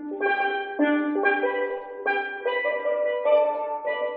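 Steelpan music: chords struck in a steady rhythm, two or three strokes a second, each ringing on until the next.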